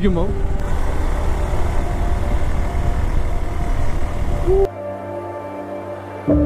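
Motorcycle riding noise: engine and wind rushing past the handlebar-mounted camera as a steady roar. Near the end it cuts off abruptly and soft background music with held tones takes over.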